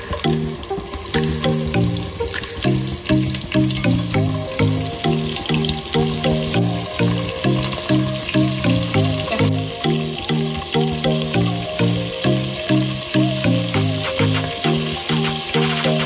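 Prawns sizzling and spitting as they fry in hot oil in a pot, a steady crackling hiss, over background music.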